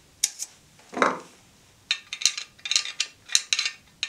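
Light metallic clicks and clinks from a car-body file holder being handled while its tension screw is turned with a screwdriver to bow the file blade. A duller knock comes about a second in, and a quick run of sharp clicks follows in the second half.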